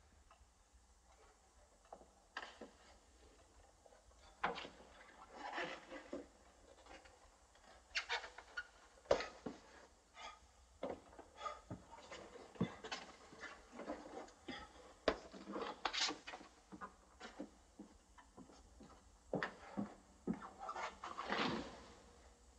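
Irregular footsteps, scuffs and knocks on wooden floorboards, with brief rustling of clothing, as a person is lifted and carried; a longer rustling scuffle comes near the end.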